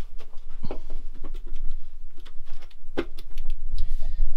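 Irregular light knocks and clicks of a person shifting about and handling the camera inside a van's carpet-lined rear.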